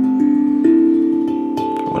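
Steel tongue drum struck with mallets: three single notes in turn, each ringing on and overlapping the next.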